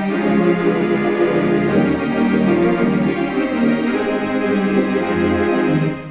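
Solo organ playing a gospel hymn arrangement: full, held chords over a bass line that moves from note to note. The sound dips briefly right at the end, as a phrase ends.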